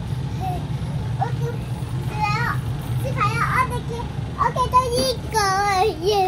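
A young girl's excited, high-pitched voice calling out in short wavering cries, loudest near the end, over a steady low hum.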